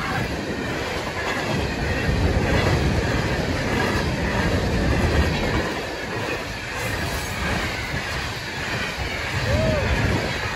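Freight train of tall-sided coal gondola cars rolling past close by: a steady rumble of steel wheels on rail, with clickety-clack over the rail joints and some wheel squeal.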